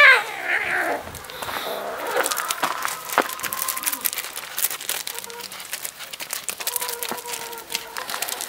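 A cat meows loudly once at the very start, its pitch rising and falling, with a shorter call just after. From about two seconds in there is a run of small crunches and clicks on loose gravel as the animals scamper about.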